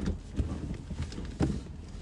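Soft knocks and rustling of someone rummaging around inside a car, with two light knocks about half a second and a second and a half in, over a low steady rumble.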